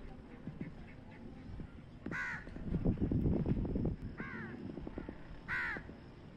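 A crow cawing three times, about two seconds apart, each caw a short harsh call. A low rumbling noise swells in the middle, between the first and second caws.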